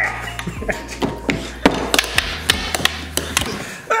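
Rapid, irregular plastic clacks of a puck being struck back and forth by plastic strikers and bouncing off the rails of a small tabletop air hockey table with its air off, about a dozen hits in quick succession.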